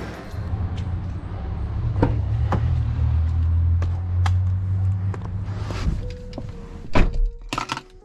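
Background music with a steady low bass, then a Chevrolet Camaro's door shutting with a sharp thunk about seven seconds in, followed by a few lighter clicks.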